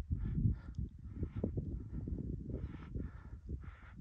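A hiker breathing hard in quick, repeated breaths, out of breath from climbing at high altitude without being acclimated, with a low rumble of wind on the phone's microphone.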